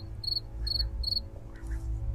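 A cricket chirping: short, high chirps about three a second that stop about halfway through, over a low steady drone.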